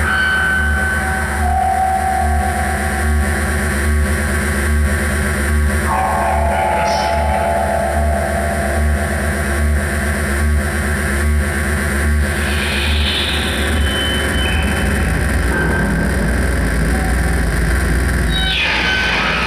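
Live analog electronic noise improvisation from a Doepfer A-100 modular synthesizer through spring reverb and a Moog MF-107 FreqBox with a mixer feedback loop: a dense, distorted wall of noise over a pulsing low drone. Held whistling tones rise out of it now and then, with a brighter burst of high noise about two-thirds of the way through.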